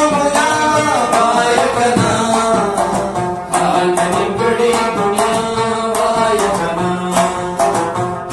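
Pashto folk music: a rabab plucked in quick notes, with a man's voice singing in long, gliding phrases over it.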